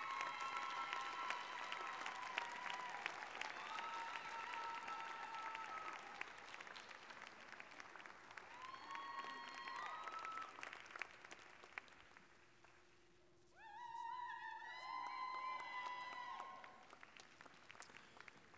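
Audience applauding in a large hall, the clapping thinning out after about ten seconds, over soft background music with long held notes; the music drops out briefly, then returns near the end.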